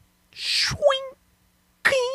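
Two spur-clink footstep sound effects for a spurred cowboy boot, about a second and a half apart. Each is a short hiss that settles into a brief ringing tone.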